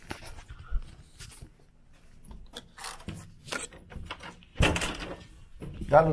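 A hotel room door being opened and let in, with scattered clicks and knocks and one loud thunk about four and a half seconds in.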